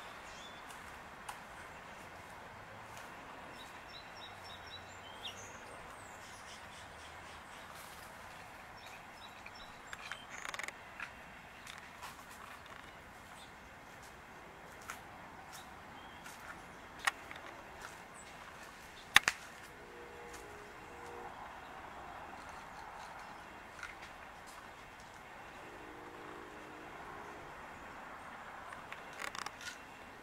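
Faint outdoor ambience with a few distant bird chirps, broken by a handful of sharp clicks, the loudest a little past halfway. Twice in the second half there is a brief low hum.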